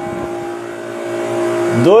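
Steady mechanical hum of a running refrigeration unit, its compressor and fan going, getting a little louder towards the end.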